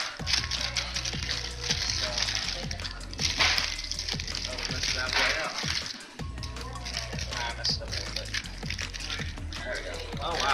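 Paper burger wrapper crinkling and rustling in short bursts as it is unwrapped by hand, over background music.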